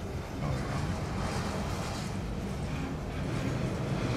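A long cut of autorack freight cars being shoved back slowly past the tracks, giving a steady rolling noise of wheels on rail.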